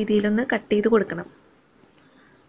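A woman speaking for just over a second, then near silence.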